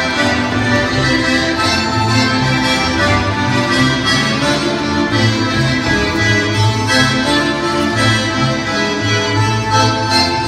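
Instrumental Russian folk dance music, a dense ensemble of melody over a steady, recurring bass beat.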